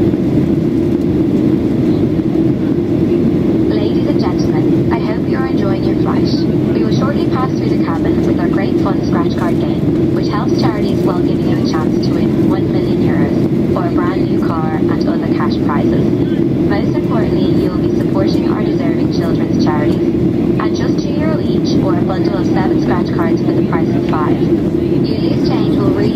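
Steady cabin drone of a Boeing 737-800 in flight: its CFM56-7B jet engines and the rush of air along the fuselage, heard from a window seat inside the cabin.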